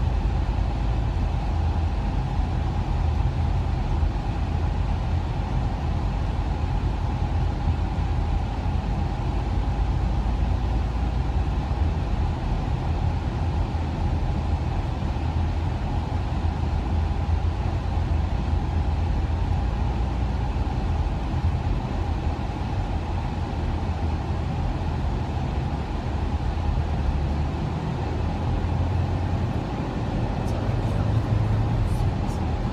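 Steady low road and engine noise inside a car's cabin while it is driven along a highway.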